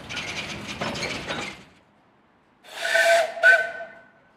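A steam locomotive's whistle gives two short blasts near the end, the second shorter than the first. Before them, a rapid mechanical rattling stops about halfway through.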